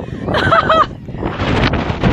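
Wind rumbling on the microphone, with a short high-pitched shout from a young voice about half a second in.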